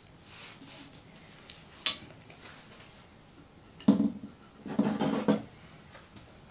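Handling noises from a stretched canvas being picked up and moved. A light click comes about two seconds in. A sharper knock follows about four seconds in, then a short rattling scrape as the canvas is gripped and shifted on its plastic supports.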